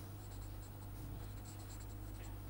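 Felt-tip marker writing on paper: faint scratching and small squeaks of the tip as letters are written, over a steady low hum.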